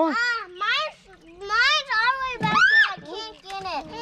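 Young children's high-pitched voices, with a short pause about a second in.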